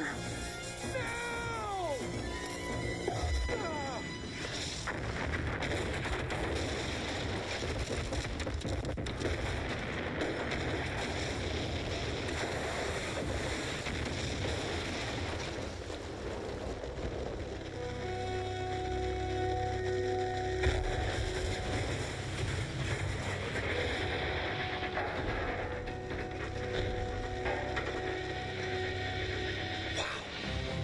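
Film soundtrack: dramatic music mixed with a long explosion-and-fire roar through the first half, with a few falling tones about a second in. The second half is mostly sustained music chords.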